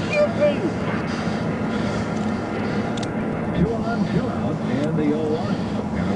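Indistinct voices at a distance over a steady low hum, as heard from inside an idling patrol car.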